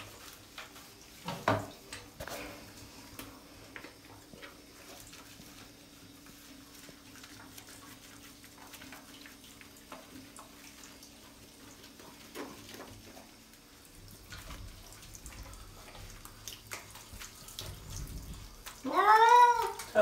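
Wet domestic shorthair cat in a bathtub giving one long, loud meow near the end, rising then falling in pitch, a complaint at being bathed. Faint running water from a hand-held shower sits underneath in the last few seconds.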